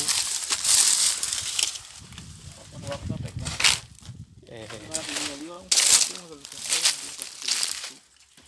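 Dry vegetation rustling and crunching as someone walks through a plot littered with dead palm fronds and leaves: a steady rustle at first, then a few sharp crackles, with soft voices between them.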